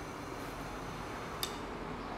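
Fuel injector test bench running its auto-check on four pressurized injectors: a steady low hiss with one sharp click about one and a half seconds in.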